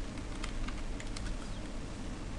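Typing on a computer keyboard: a few scattered keystrokes.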